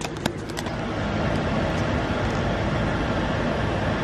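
Steady cabin noise inside a GMC vehicle with its engine running, with a few sharp handling clicks near the start.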